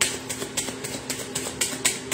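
Tarot cards being shuffled by hand: a run of quick, irregular card clicks and snaps, several a second, over a steady low hum.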